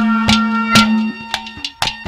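Haryanvi ragni folk music: a steady held drone note under sharp hand-drum strikes. The drumming thins out in the second half, and the drone breaks off briefly near the end.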